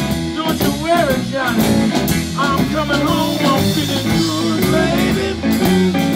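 Live blues band playing an instrumental passage: electric guitars, bass and drum kit, with a lead line bending in pitch over a steady beat and cymbal ticks.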